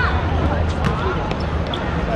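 Football being kicked on an outdoor hard court: sharp thuds of shoe on ball, the clearest about a second in, among the players' shouts and calls, over a steady low hum.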